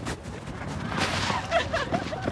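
Rushing noise that builds over the first second as a bulldog and a runner sprint along a dirt track, with a few short vocal sounds in the second half.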